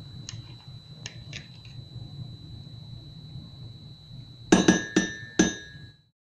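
A metal teaspoon clinking against a porcelain cup as lumps of ghee are knocked off it into the cup. There are a few faint taps first, then three ringing clinks near the end.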